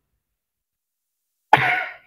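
Silence, then one short cough from a man about a second and a half in.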